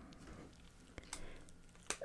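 Faint handling sounds at a desk: light rustling with a soft click about a second in and another just before two seconds, as a paper index card is set down.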